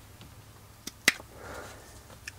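Rotary leather hole punch squeezed through a leather sheath: a faint click, then a sharp snap as the tube cuts through, about a second in, followed by a brief soft rustle of the leather.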